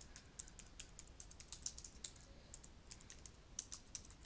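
Typing on a computer keyboard: a quick, uneven run of faint key clicks, with a few louder taps near the end.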